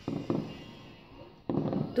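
Two fireworks bangs, one right at the start and one about a second and a half in, each trailing off over about half a second.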